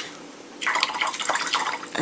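Liquid swishing in a small container, starting about half a second in and stopping near the end.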